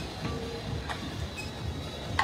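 Gym room ambience: a steady low rumble with background music and a couple of faint clicks, about a quarter-second and a second in.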